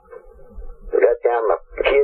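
Speech from a radio interview, starting after a brief pause, with a faint steady hum underneath.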